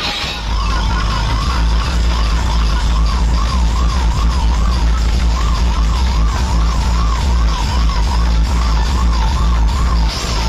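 Loud DJ music blasted through large vehicle-mounted speaker stacks, dominated by heavy deep bass. Over it a siren-style warble rises and falls about twice a second, dropping out briefly a couple of times.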